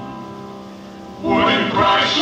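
Live concert music from an audience recording: soft, sustained band accompaniment, then about a second in voices and band come in loud together.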